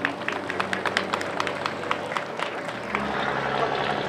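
Scattered applause from a small outdoor crowd, the individual hand claps distinct and irregular, thinning out toward the end.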